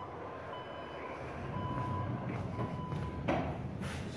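Electronic beeping: a thin, steady high tone that sounds in stretches of about half a second and breaks off between them, over a low background rumble, with a single knock near the end.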